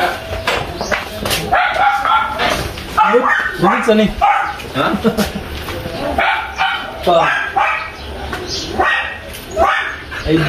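Several excited voices talking and laughing, with a dog barking at intervals.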